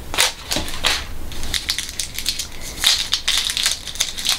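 Paper wrapping crinkling and crackling as it is peeled off a small shampoo-conditioner bar, in quick, irregular crackles and rustles.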